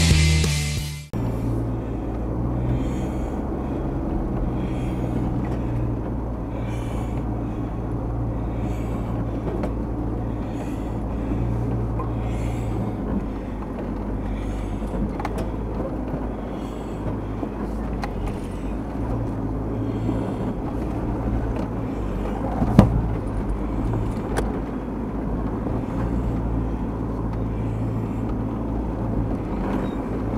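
Rock music cuts off about a second in. After that a four-wheel drive's engine runs steadily, heard through the dash cam inside the vehicle, with one sharp knock a little after the middle.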